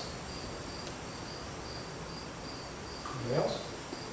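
A cricket chirping steadily in an even series of high chirps, about two to three a second. A person's voice is heard briefly near the end.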